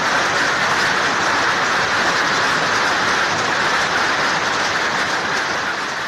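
Hail and heavy rain pelting down in a dense, steady clatter that eases slightly near the end.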